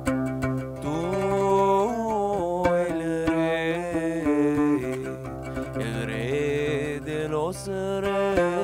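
A man sings a traditional Sephardic piyut (liturgical hymn) of the Aleppo tradition, holding long notes that slide and bend in ornamented runs, while plucking an oud to accompany himself.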